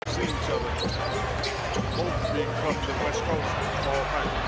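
A basketball being dribbled on a hardwood court during play, with short repeated bounces over steady arena noise.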